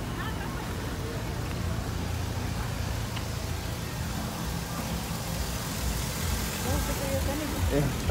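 Slow-moving cars and pickup trucks passing close by, engines running at low speed with a steady low hum, with faint voices of people nearby.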